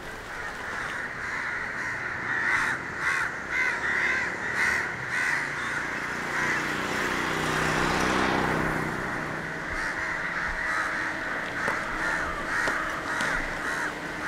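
Crows cawing over and over in short repeated calls. Near the middle a motor vehicle passes, its engine note falling in pitch.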